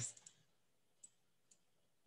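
Near silence broken by a few faint computer-mouse clicks, right-clicks on the canvas: two small ones just after the start, then single clicks about a second in and half a second later.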